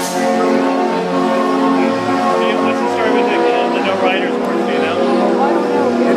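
The carousel's 65-key Bruder Elite Apollo band organ playing: held chords of organ pipes over a bass note that beats about twice a second.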